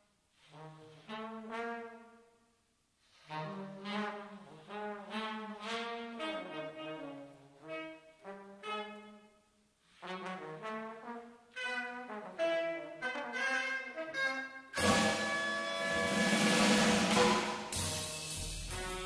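Live jazz from a quartet: trombone and tenor saxophone play slow melodic phrases with short breaks between them. About fifteen seconds in, drums and cymbals come in loudly under the horns.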